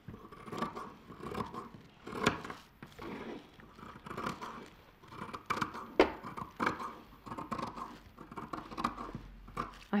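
Dressmaking scissors cutting around a pattern piece through two layers of checked fabric fused with iron-on interfacing, in a run of irregular snips, the loudest about two and six seconds in.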